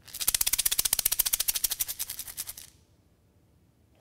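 Taped plastic egg shaker shaken fast and evenly, a quick steady rattle of the filling against the shell for about two and a half seconds that then stops.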